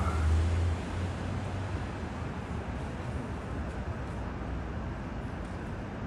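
Steady outdoor city background noise of distant traffic, with a low rumble that fades out about a second in.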